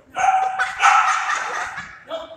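A dog barking, a couple of loud barks run close together.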